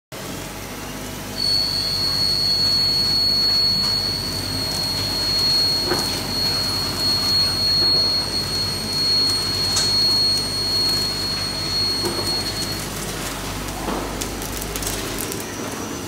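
Muratec CNC lathe running in a machine shop: a steady, noisy machine hum with a high-pitched whine that starts about a second and a half in and stops a few seconds before the end.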